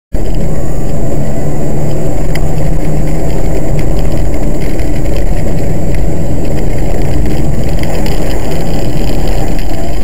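Car driving at speed, heard from inside the cabin: a loud, steady low rumble of engine and road noise.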